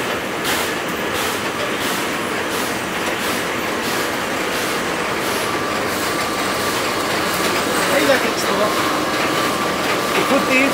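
Latex glove dipping-line machinery running: a steady, even mechanical din with faint steady tones in it. A voice comes in briefly near the end.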